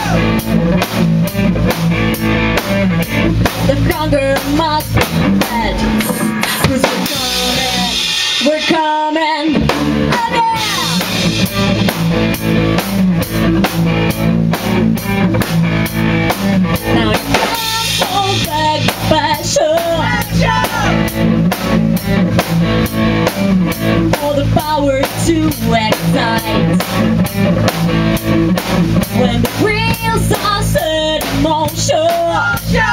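A rock band playing an instrumental passage on electric guitar, bass guitar and a drum kit, with a steady driving beat. About eight seconds in, the low end drops out for a moment, then the full band comes back in.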